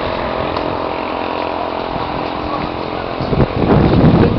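A small engine running steadily at an even pitch, with voices coming in near the end.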